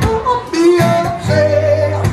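Man singing a blues song live while strumming an acoustic guitar, his voice sliding between notes and holding a long note in the second half.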